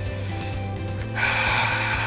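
Background music, and about a second in a man lets out a loud, breathy breath that lasts most of a second: a sound of relief and contentment.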